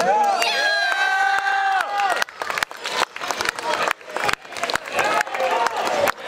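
Spectators cheering, with high-pitched shouts held for about two seconds as the winner is declared, then uneven clapping with scattered shouts.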